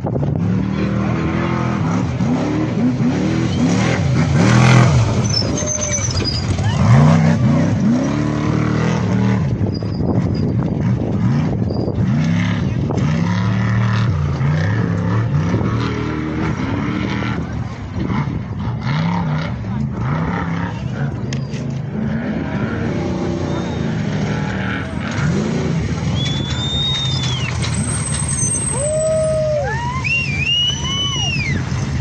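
Trophy truck engines revving hard, the pitch sweeping up and down again and again as the trucks accelerate past, with voices in the background. Near the end a few higher rising-and-falling whines come in.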